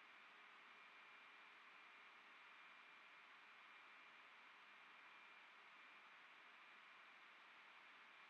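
Near silence: a faint steady hiss with a thin, high steady tone.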